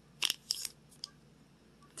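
A few brief, quiet crinkles of crumpled paper till receipts being handled, the first about a quarter second in and the last around one second in.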